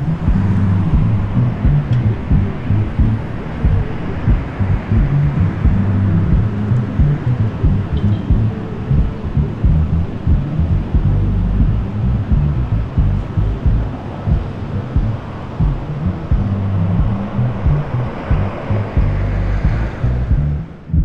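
Music with a heavy bass line and a steady drum beat.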